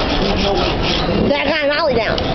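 Fingerboard being pushed and rolled across a paper poster on a tabletop, making a steady rough rubbing and scraping noise. A voice is heard briefly past the middle.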